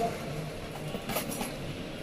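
Busy market-hall background: a steady din with faint distant voices, and a couple of sharp clatters a little after a second in.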